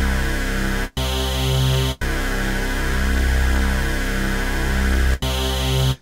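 Ableton Wavetable software synth patch playing sustained chords with a deep low end, its oscillators thickened by Classic unison mode at three voices and 30% detune, which makes the sound much bigger and wider. The chord changes with a short break about a second in, again at two seconds and at about five seconds.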